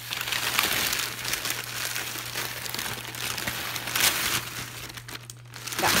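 Plastic bag and packaging rustling and crinkling steadily as a hand digs through it, with a louder crinkle about four seconds in.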